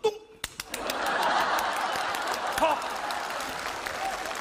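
Studio audience laughing and applauding, the clapping and laughter building up about a second in and keeping on.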